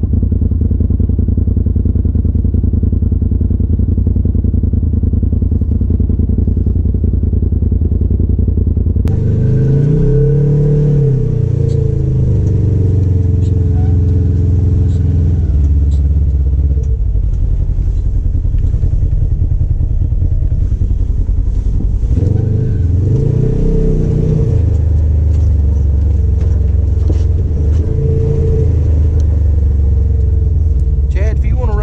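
Side-by-side UTV engine heard from inside the cab: at first a steady low drone while crawling, then a second machine's engine that revs up and back down twice, around ten and twenty-three seconds in, with light scattered clatter.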